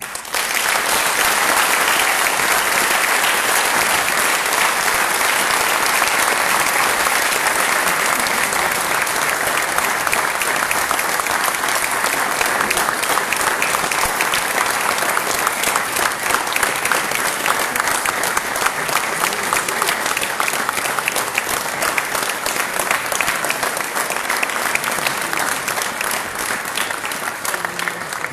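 Audience applauding after a speech, a dense round of clapping that thins into more distinct separate claps in the second half and eases off near the end.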